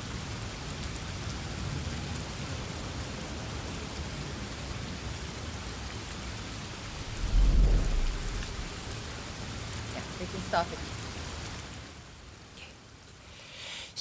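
Recorded rain from a performance video's soundtrack, played over a hall's speakers: a steady hiss of rain with a deep rumble like thunder about seven seconds in. It fades out near the end.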